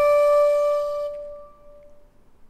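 A bell-like chime sound effect ringing out after a single strike, its clear tone fading away about a second and a half in.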